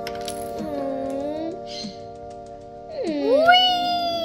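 Background music with long held chords. Over it a voice makes drawn-out sounds that glide in pitch: a low dipping one about half a second in, then a louder rising one from about three seconds in.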